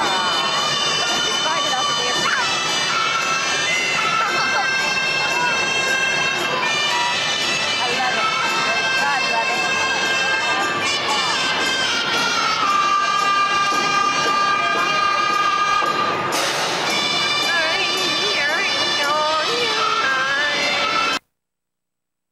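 Live circus band music filling the arena, long held notes over the chatter of the crowd. It cuts off abruptly near the end.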